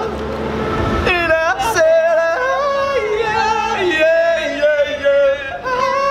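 Young male voices singing loudly without clear words, in long held notes that slide and step up and down with a wobble, like mock yodelling; the pitch sweeps up about a second in.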